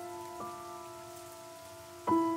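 Steady patter of rain falling on leaves. Under it, soft piano notes linger and fade, and one quiet new note sounds about half a second in.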